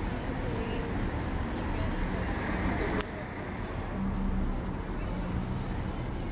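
Steady city street traffic noise, the low hum of passing cars, with a single sharp click about three seconds in.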